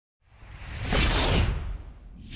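A whoosh sound effect for an animated TV logo intro, with a deep low rumble under it. It swells up to a peak about a second in, then fades away.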